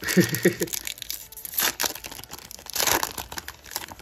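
Foil wrapper of a Yu-Gi-Oh! booster pack crinkling and tearing as it is opened by hand, with louder rips about a second and a half and three seconds in.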